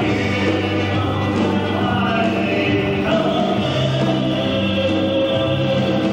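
A live country and rockabilly band playing an instrumental passage: held accordion chords over upright bass, electric guitar and drums, with the chord changing about halfway through.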